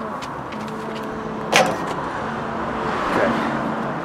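A microwave oven's door being pulled open, with a single sharp clack of the latch about one and a half seconds in. Steady outdoor background noise with a faint low hum runs beneath it.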